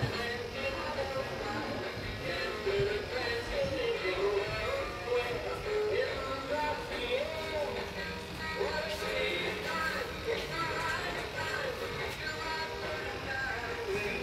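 A simple electronic melody playing continuously, the kind of built-in tune that plays from an animated light-up Christmas village display.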